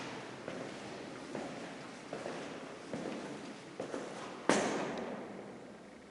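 Footsteps on a concrete floor in an empty, echoing room, about one step a second, with a sharper, louder step or knock about four and a half seconds in that rings on.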